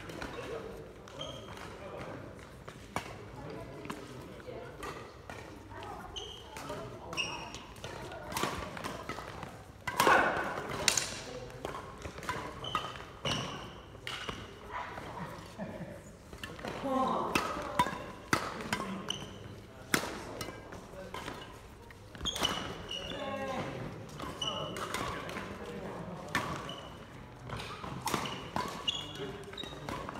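Badminton play in a large indoor hall: sharp racket strikes on the shuttlecock and footfalls on the wooden court floor, scattered irregularly, with players' voices in between.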